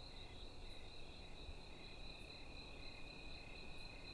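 Crickets chirping, faint: a steady high-pitched trill with a softer, evenly pulsing chirp beneath it.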